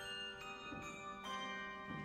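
Handbell choir ringing a slow chordal passage, a new chord struck every half second or so and each left ringing over the next.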